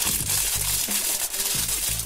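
Crinkling of a thin plastic wrapper as it is handled and peeled off a toy doll, over background music with low steady notes.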